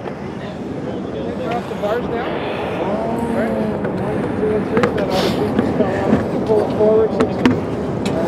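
Several men talking at once in the background, over a steady outdoor noise, with a few sharp knocks about two, five and seven seconds in.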